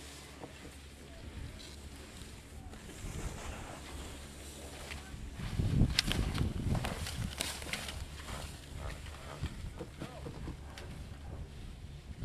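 Skis scraping and chattering over hard-packed moguls, loudest about six seconds in with a burst of low rumble and sharp clicks as the skier passes close.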